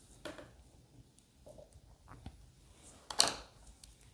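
Faint handling sounds of painting tools on a table: a light tap just after the start, a few small ticks, and a short, louder rustling scrape about three seconds in as the paintbrush is put down.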